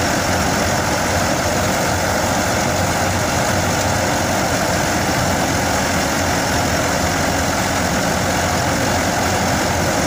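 New Holland 640 tractor's diesel engine running steadily under load, powering a thresher that is being fed crop stalks, with the thresher's drum running along with it in one unbroken mechanical din.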